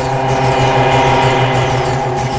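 Loud, dense synthesizer drone: a buzzing, pulsing low tone under a cluster of steady higher tones, with high falling sweeps repeating about every two-thirds of a second.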